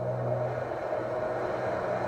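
A steady low rumble with a constant hum and no breaks.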